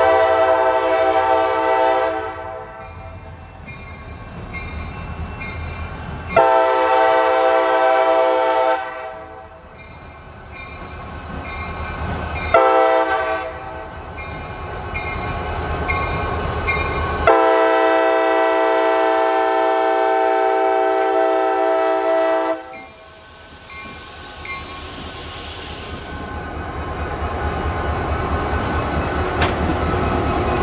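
CSX GP40-2 diesel locomotive's multi-note air horn sounding the grade-crossing signal: two long blasts, a short one and a final long one, with a bell ringing about twice a second between blasts. After the last blast a brief hiss comes, and the locomotives' diesel engines grow louder as they pass close by.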